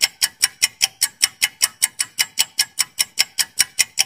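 Quiz countdown-timer sound effect: a clock-like ticking, quick and even at about five ticks a second.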